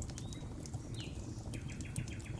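Wood fire crackling with scattered sharp pops over a low steady rumble, with birds calling: a short high whistle, a falling chirp about halfway, then a fast trill of repeated chirps near the end.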